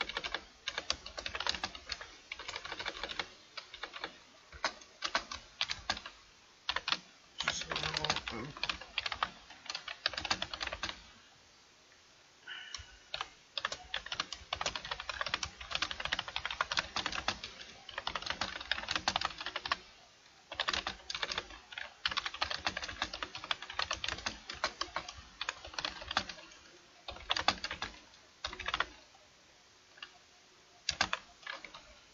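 Computer keyboard typing: runs of quick key clicks in bursts, with short pauses between them and one longer pause about halfway through, as text is typed into a web page.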